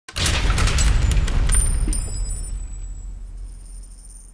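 An intro sound effect: a burst of rapid sharp clicks and crashes over a deep rumble, dying away over about three seconds with a faint high ringing, then cut off abruptly.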